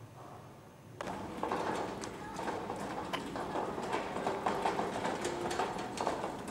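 Small two-wheeled hand trolley rolling over cobblestones, its wheels rattling and knocking irregularly, with footsteps on the cobbles. The sound starts suddenly about a second in, after faint room tone.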